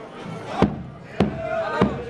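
A marching band's bass drum beating a steady march rhythm, a stroke about every 0.6 s, three strokes in all, with voices between the beats.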